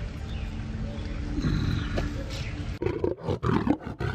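Steady outdoor background noise with a low rumble; nearly three seconds in, a loud roar cuts in abruptly and rises and falls in several pulses.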